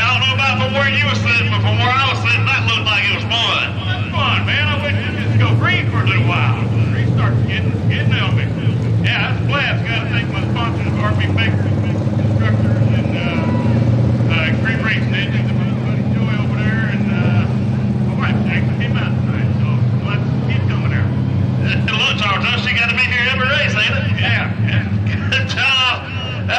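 Dirt-track stock car engine idling with a steady low drone, under indistinct voices.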